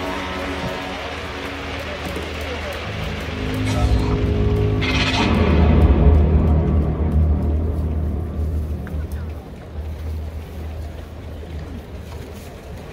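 Stadium PA music over the dome's loudspeakers, building into a deep bass swell with a short whoosh about five seconds in, then a low rumble that slowly fades.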